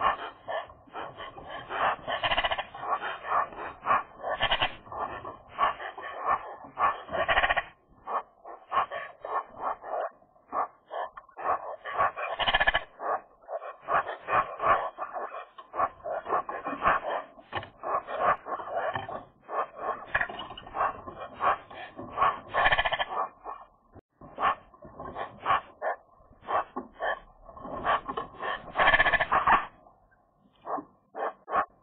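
A group of Eurasian magpies calling together at close range: their low-key winter 'small talk', short calls and chatter following one another quickly and irregularly, with several birds overlapping and a few brief lulls.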